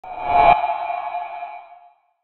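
Logo-intro sound effect: a short swelling whoosh that cuts off about half a second in, leaving a ringing, ping-like tone that fades away by about two seconds.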